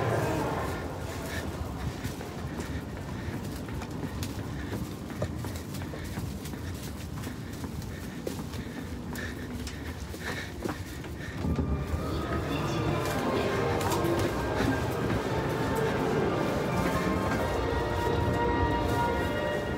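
Footsteps along the aisle of a Shinkansen carriage over a steady cabin hum, with a few light knocks. About two-thirds of the way in, the background noise grows louder.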